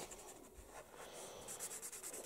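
Faint scratchy strokes of a felt-tip marker scribbling on paper as a child colours in, quick short strokes that grow a little busier in the second second.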